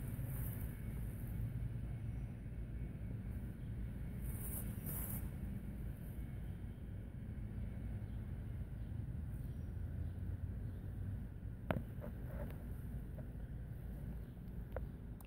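Low, steady wind rumble on the microphone outdoors, with one short click near the end.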